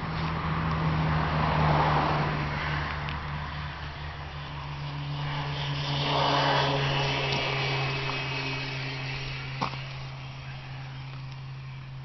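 A vehicle engine runs steadily, its low hum dropping slightly in pitch about four seconds in, while a rushing noise swells up twice, around two and six seconds in. A single sharp knock comes near the end.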